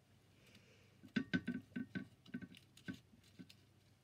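Dried oak leaves and dyed paper crackling and rustling as fingers lift and handle them. The sound is faint, a run of small crackles from about a second in until about three seconds.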